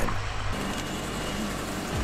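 Tractor engine running steadily while pulling a cabbage harvester, with the harvester's machinery clattering along under it: an even, continuous mechanical hum.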